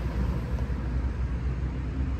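Steady low rumble of a vehicle engine running nearby.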